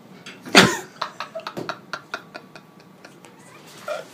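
A person's voice: one loud, short vocal burst about half a second in, followed by a string of short clicks.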